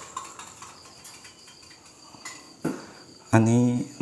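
Crickets chirring steadily in a thin high pitch, with a short click about two and a half seconds in.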